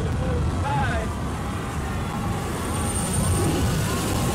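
A steady, loud low rumble with faint voice-like sounds over it.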